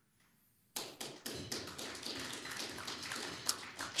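Audience applauding, a dense patter of hand claps starting about three quarters of a second in and running on at a steady level.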